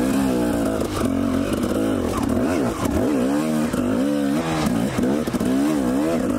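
Dirt bike engine revving up and down over and over as the rider works the throttle on a rocky single-track climb, the pitch rising and falling about once a second.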